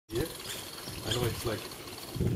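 People talking, with a faint steady high-pitched tone beneath the voices.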